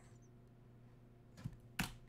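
Near silence with a faint steady hum, then a soft tap and a single sharp click near the end, typical of a computer keyboard or mouse click.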